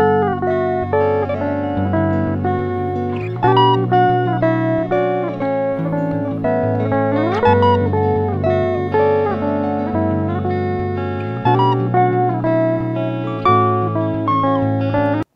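Three layered electric guitar tracks from a Mark James Heritage DK350 playing back together, still dry before any reverb is added. A low part on the neck pickup lies under a high melody on the middle pickup and a thicker, fuller part on the bridge pickup in humbucker setting, all recorded with slightly raised gain. Sustained overlapping notes, with a rising slide about seven seconds in.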